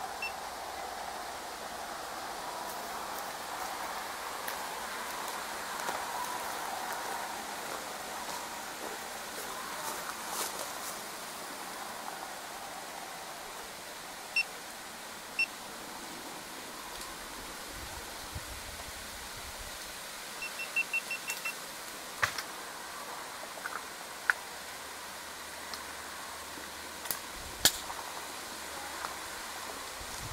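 Steady outdoor background hiss with a few short electronic beeps: single beeps near the start and around the middle, then a quick run of about six in under a second, followed by a few sharp clicks.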